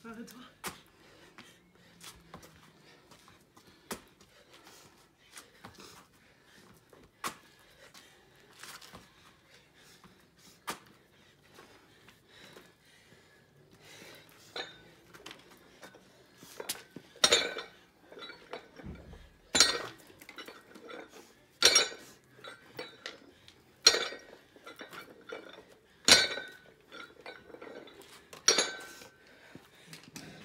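Plate-loaded dumbbell clanking with a sharp metallic ring at each rep of dumbbell snatches, six loud clanks about two seconds apart in the second half. Lighter clicks and taps come before them.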